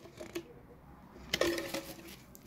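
Crockery clinking: a faint tap near the start, then a sharp clink with a short ring about a second and a half in.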